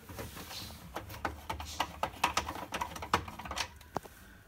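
Handling noise: a run of irregular light clicks and taps with some rustling as the camera is moved about by hand.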